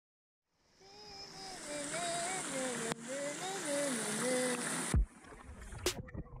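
Water from a pool spout pouring and splashing, fading in after a brief silence, with a voice humming a wavering tune over it for a few seconds. Near the end there is a loud thump, and the sound turns duller as the microphone dips under the water.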